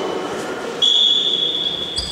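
A referee's whistle sounding one steady high blast of about a second, starting just before the middle, over the echoing din of a sports hall.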